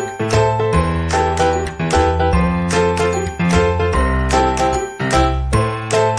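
Background music: a bright, chiming melody over a bass line, with notes struck in an even rhythm.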